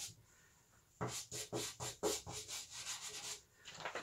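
Soft pastel stick, held on its side, rubbed across textured pastel paper in a quick run of short strokes, about five a second, starting about a second in.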